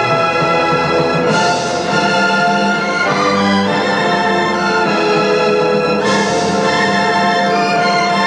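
Symphony orchestra playing a sustained instrumental passage, with two sudden bright swells, about a second in and again about six seconds in.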